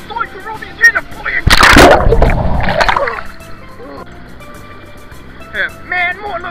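Pool water splashing loudly about a second and a half in, a sudden rush that lasts about a second and dies away, over steady background music.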